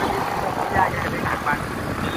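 Steady road and wind rumble from a vehicle travelling at highway speed, with brief faint voices about a second in.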